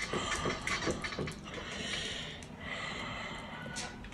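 A spoon scraping and clicking against a plastic tub as a soft creamy spread is scooped out, with irregular short scrapes and taps.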